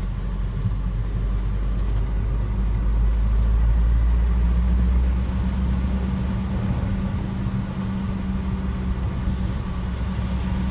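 Car engine and road noise heard from inside the cabin while driving, a steady low rumble. It grows louder over the first few seconds, then eases back about five seconds in.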